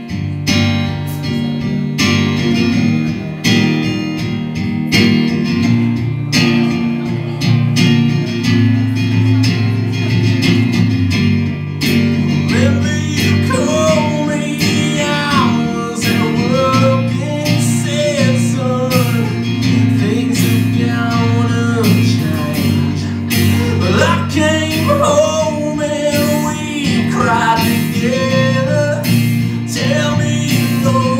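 Live band music: an acoustic guitar strummed over a drum kit, with a man singing from about twelve seconds in.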